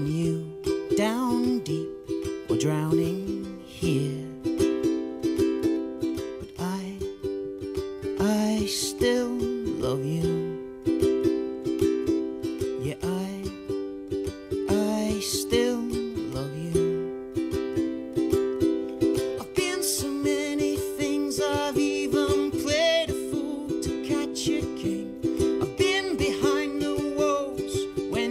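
Solo ukulele played with a man singing over it: a live acoustic performance of a slow ballad.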